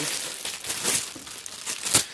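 Plastic packaging crinkling and rustling as it is handled and pulled open by hand, with a sharper crackle near the end.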